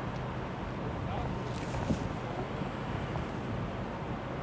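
Steady low rumble of outdoor background noise, like wind on the microphone, with faint indistinct voices and a single short knock about two seconds in.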